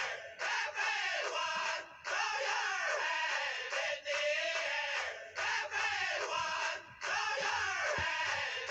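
A high-pitched voice in long, drawn-out cries, broken by short pauses about every one to two seconds. The sound is thin, with almost no low end.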